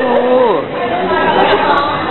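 Several people talking at once: the general chatter of a busy dining room.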